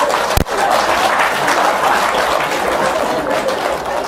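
Audience laughing and clapping after a joke's punchline, with one brief sharp knock about half a second in.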